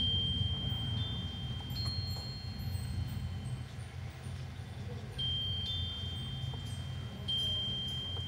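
Glockenspiel notes struck one at a time and left to ring, high and sustained: a note at the start, two more in the first two seconds, then further strikes about five and seven seconds in. A steady low rumble sits underneath.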